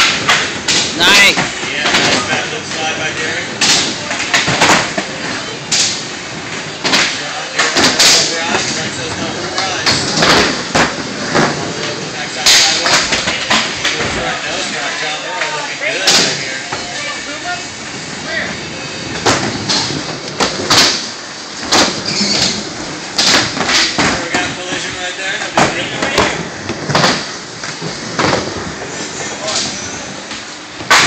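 Skateboards rolling and clacking on wooden ramps and ledges in a large hall, with repeated sharp board impacts from pops, grinds and landings. Underneath runs the steady chatter of a watching crowd.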